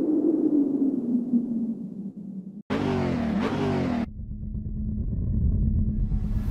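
Car sound effects in an animated logo sting. It opens with a low, engine-like rumble carrying a swelling tone. About two and a half seconds in there is a brief cut, then a loud burst of about a second with a pitch gliding up and down, settling into a low steady hum.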